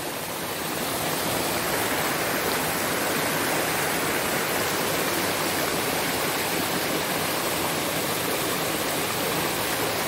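Shallow rocky river rushing over stones: a steady rush of water that grows a little louder in the first second, then holds even.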